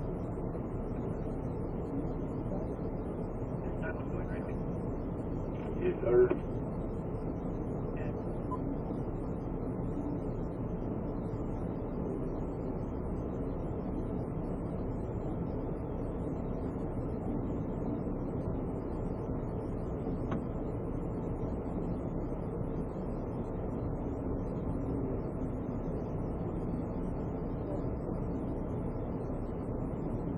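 Steady low rumble and hiss inside a police patrol vehicle's cabin, even throughout, with a short louder sound about six seconds in.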